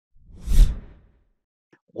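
A short whoosh sound effect that swells up and fades away within about a second, with a deep rumble at its peak.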